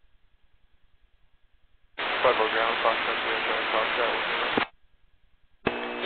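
Air-traffic-control radio: a voice transmission comes in through steady hiss about two seconds in and cuts off abruptly after nearly three seconds. A second transmission keys up just before the end.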